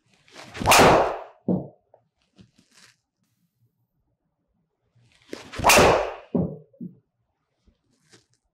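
Two driver shots about five seconds apart, each the swish of the swing and the sharp crack of a Tour Edge E521 driver head striking the ball, followed a moment later by a softer thump as the ball hits the simulator screen.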